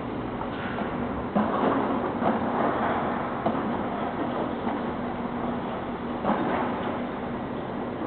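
The panels of a 33 m wide telescoping hangar door rolling open along their track: a steady rumble that swells for a couple of seconds early on, with a few clunks.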